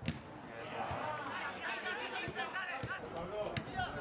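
Several players' voices calling out and talking on a football pitch during play, none of it clear words, with a sharp knock of the ball being struck right at the start and a few fainter knocks later.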